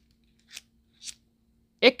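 Two brief metallic clinks about half a second apart, as a carabiner bunch of split rings and small metal keychain flashlights is handled and knocks together. A man's voice starts near the end.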